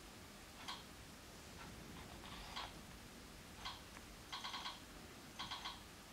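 Faint light clicks and small metallic jingles: a few single clicks, then two quick clusters of three or four after the middle.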